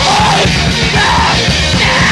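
Noise rock band playing at full tilt: a dense wash of distorted guitar over rapid, pounding drums, with yelled vocals arching through it.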